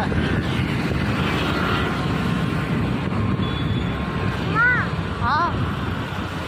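Wind rushing over the microphone and the steady road and engine noise of a moving two-wheeler in city traffic.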